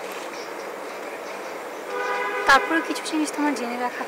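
A steady horn-like tone with several overtones sounds about halfway through and holds for about a second, with a sharp click in the middle of it. A few short, low, voice-like sounds follow near the end.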